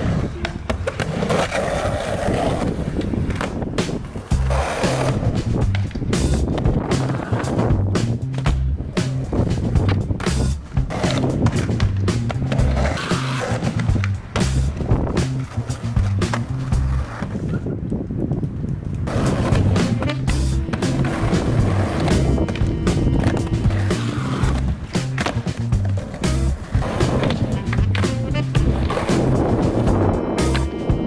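Skateboard wheels rolling on concrete and ramps, with repeated sharp clacks of the board popping and landing, over background music with a steady beat.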